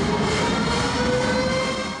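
Motorcycle engine held at high revs, one steady note rising slowly in pitch, over crowd noise.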